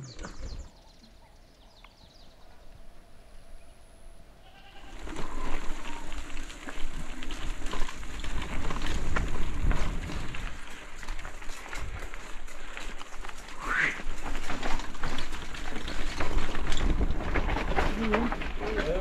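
Bicycle riding fast down a rough dirt single-track: after a few quiet seconds the tyres and frame rattle and knock over the bumps, with wind rumbling on the mic. A short rising squeal cuts through about two-thirds of the way in.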